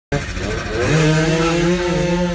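70cc racing motorcycle engine launching from the start line at full throttle: its pitch climbs steeply over the first second, then holds high and steady as the bike pulls away.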